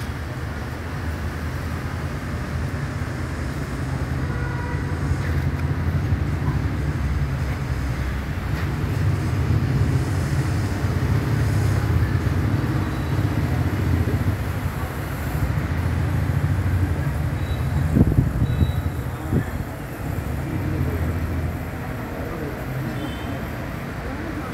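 Steady low outdoor background rumble with a hiss over it, swelling through the middle and easing near the end, with one sharp knock about eighteen seconds in.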